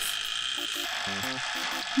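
Mechanical timer dial of a BALMUDA The Toaster Pro being turned, clicking as it is wound to about five minutes to start an empty first-use bake.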